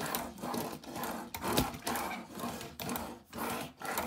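Transformers MB-03 Megatron toy tank pushed back and forth across a tabletop, its small plastic wheels rolling and scraping in a quick run of about six rubbing strokes.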